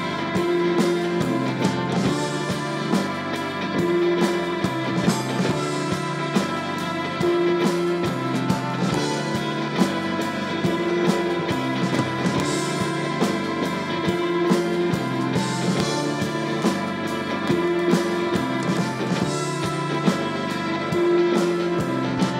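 Rock band playing live in an instrumental passage: electric guitars, bass guitar and a drum kit with regular drum hits and cymbal crashes every few seconds, under a repeating guitar figure.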